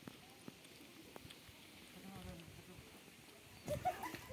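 Faint outdoor quiet with scattered light clicks, a distant voice about halfway through, and a short, louder burst of voices near the end.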